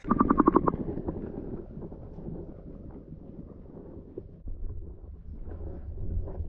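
Muffled water noise picked up by a camera's microphone underwater: a quick run of splashing pulses at the start, then a low, dull rumble and sloshing that swells again near the end.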